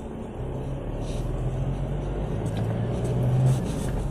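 Ford Ranger 2.2's four-cylinder turbodiesel engine heard from inside the cab while driving, a steady low drone over road noise that rises slightly in pitch and level, then drops away near the end at a gear change in the six-speed manual gearbox.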